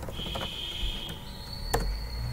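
A few keystrokes on a computer keyboard, then one sharper key click near the end as the Enter key is pressed and the terminal command runs. A faint, steady high-pitched whine runs under the typing.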